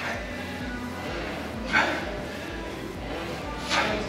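Two short, forceful exhales about two seconds apart from a man straining through repetitions on a leg-strength machine, over a steady low hum.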